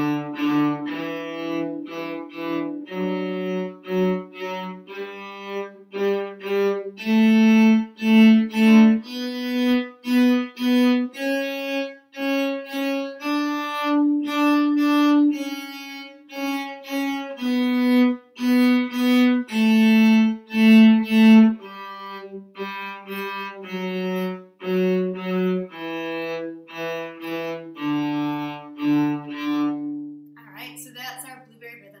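Cello playing a one-octave D major scale up from the open D string and back down. Each note is bowed three times in a long-short-short rhythm, and the scale ends on a long held low D.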